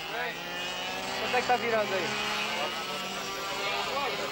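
A go-kart engine running steadily, with people talking over it.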